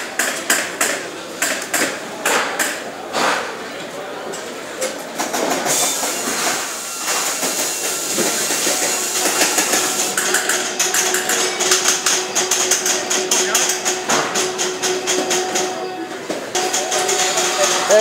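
Factory-floor work noise: a dense, uneven run of sharp knocks and taps throughout, getting busier in the second half.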